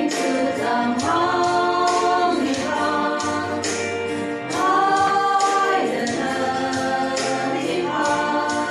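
A women's vocal group singing a Tangkhul-language gospel song in unison over a steady percussive beat. About halfway through, the singing swells on a long held note.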